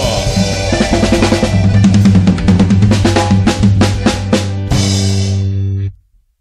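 A band with accordions, electric guitars, keyboard and drum kit playing the last bars of a lively song: a run of drum hits on snare and bass drum, then a final held chord that stops abruptly just before the end.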